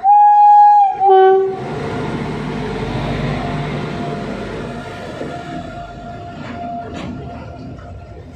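Indian Railways electric freight locomotive sounding its horn twice, a long blast then a short one that drops to a lower note, followed by the rumble of the locomotive and its freight wagons rolling past close by.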